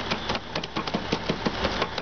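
A steady low engine hum with rapid, irregular crackling and tapping over it.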